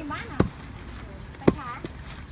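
A wooden pestle pounding young rice grains in a wooden mortar to flatten them into ambok: two heavy thuds about a second apart. Voices are heard between the strikes.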